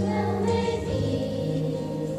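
Children's choir singing, the voices coming in at full strength at the start.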